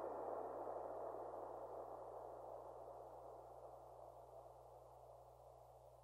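The closing tail of a dark melodic techno track: a hissing wash of sound over a low held drone, fading steadily away, its top end growing duller as it fades, until it cuts off at the very end.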